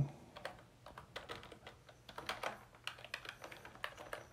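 Typing on a computer keyboard: soft, irregular key clicks in quick clusters with short gaps between them.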